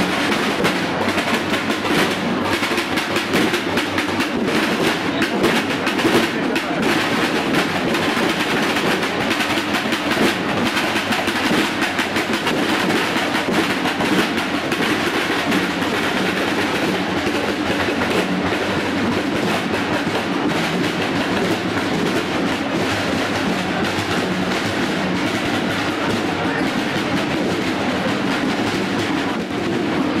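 Snare drums of a marching drum section playing a rapid, continuous beat. The strokes grow less distinct in the second half.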